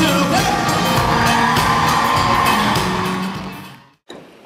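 Live concert music with a singer and a band, with whoops from the crowd. It fades out to silence over the last second.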